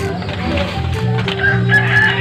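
A rooster crowing, starting about one and a half seconds in, over steady background music.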